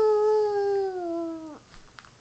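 Baby's long drawn-out vocal sound, a single held 'aah' that sinks slowly in pitch and breaks off about one and a half seconds in.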